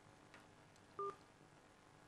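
One short electronic telephone beep about a second in, amid near silence: a phone line being connected for viewers' call-in questions.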